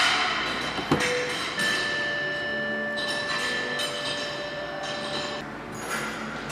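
Car door latch clicking open once, about a second in, as the driver's door of the Audi RS7 is opened, over steady background music.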